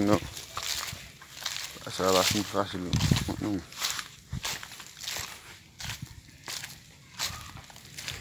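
Footsteps crunching and crackling through dry leaf litter. A person's voice is heard briefly at the very start and again about two to three seconds in.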